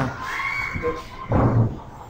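Wooden classroom furniture being moved on a tiled floor: a steady high squeak lasting under a second, then a knock about a second and a half in.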